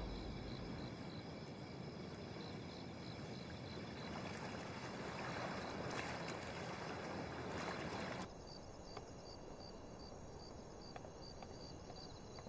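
Night-time outdoor ambience: crickets chirping in a faint, evenly repeating rhythm over a soft hiss. The background changes abruptly about eight seconds in, while the chirping carries on.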